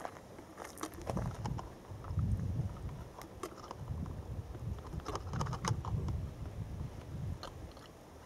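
Irregular clicks and crackles from a plastic sieve and Falcon tube being handled while the sample drains through into the tube, over a low, uneven rumble.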